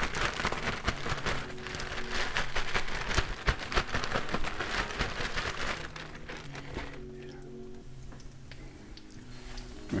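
Morel mushroom pieces being shaken in a zip-top plastic bag with a flour coating mix: a dense, rapid rattle and crinkle of plastic for about six seconds, then it stops.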